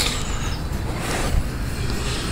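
Road traffic: a steady rushing noise over a low rumble that swells briefly about a second in, as a vehicle passes.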